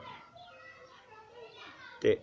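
Faint children's voices, as of children playing, with light chatter rising and falling in pitch.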